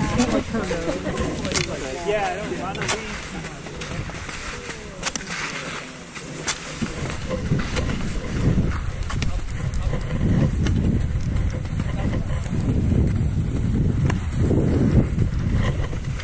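Other skiers' voices talking in the background, then, from about seven seconds in, skis sliding and scraping over wet spring snow with wind on the helmet-camera microphone, in uneven surges.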